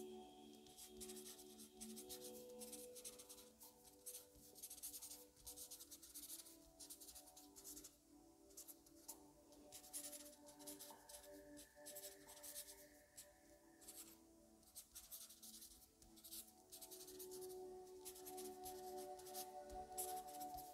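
Faint scratching of a pen writing on paper, a continuous run of short handwriting strokes. Soft background music with long held tones plays underneath.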